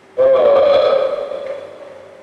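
A voice gives one long, loud sung cry with a wavering pitch, starting abruptly and fading away over about a second and a half.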